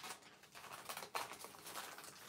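A large sheet of pre-creased origami paper rustling and crackling in short, faint bursts as it is handled and shifted on a table, with a slightly sharper crackle about a second in.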